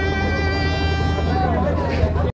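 Violin holding one long bowed note, which slides down in pitch near the end, over a steady low hum.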